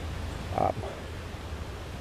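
A man's brief hesitant 'uh' about half a second in, over a steady low rumble of outdoor background noise.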